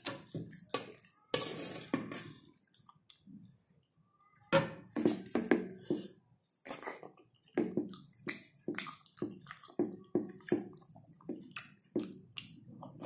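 Close-miked chewing and lip smacking as a man eats noodles and vegetables by hand: a run of short mouth sounds, a pause of about a second and a half about three seconds in, then chewing again, quicker and denser.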